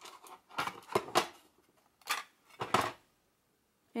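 White plastic watercolour travel palettes handled in the hands, their hard cases clacking together and clicking as one is opened: about five sharp clicks over the first three seconds, then quiet.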